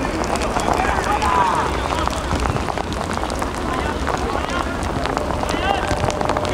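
Players and spectators shouting at intervals during a football match, over a steady outdoor rumble, with a few short sharp knocks.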